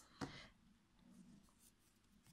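Near silence, with a faint brief rustle of hands handling crochet yarn and work just after the start.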